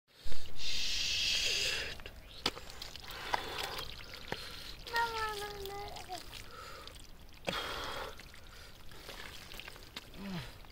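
Wet mud squelching and sloshing as a hand digs into a muddy eel hole, loudest in a rush of wet noise over the first two seconds and again about seven and a half seconds in. About five seconds in there is a short vocal sound that falls slightly in pitch.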